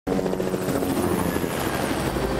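Helicopter in flight, its rotor beating in a fast, steady rhythm over the engine's steady tone.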